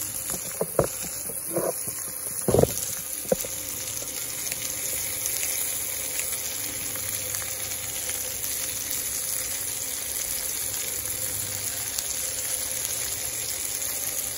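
Pan of spinach cooking in its liquid on a portable burner, simmering with a steady sizzle. A few short sharp clicks come in the first few seconds.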